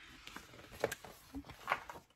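Quiet room with two faint, brief handling sounds about a second apart as a hardcover picture book is picked up and lifted.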